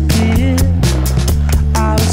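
Background music: a song with a steady drum beat, a bass line and a melody.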